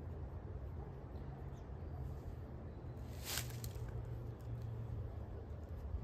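Wind rumbling on the microphone, with faint rustling of cloth being handled by hand and one brief sharp rustle about three seconds in.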